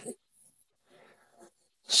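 A short spoken exclamation trailing off at the start, then near silence with only a faint soft rustle about a second in, and speech beginning right at the end.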